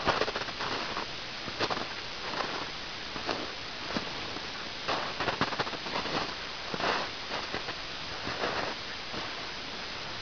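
Footsteps crunching through deep snow, irregular steps about every second or so, over a steady background hiss.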